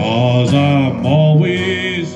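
A man singing a country song in long, drawn-out notes to his own strummed acoustic guitar.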